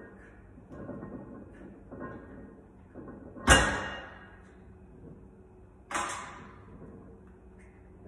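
Sounds of a 140 kg barbell bench-press set: two sharp, loud sounds about two and a half seconds apart, each dying away over about half a second, with fainter short sounds about a second apart before them.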